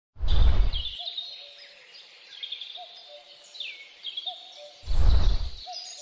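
Small birds chirping and calling, with short high chirps and down-sweeping notes and a lower short call repeating about every second and a half. Two loud rushing noise bursts, each under a second, come at the start and again about five seconds in.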